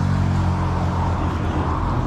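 A motor vehicle's engine running with a steady low hum, joined by a rush of noise that swells about a second in; the hum fades toward the end.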